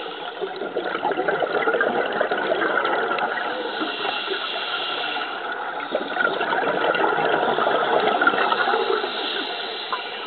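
Continuous rushing, bubbling water noise, as picked up underwater by a diver's camera, swelling and easing in waves.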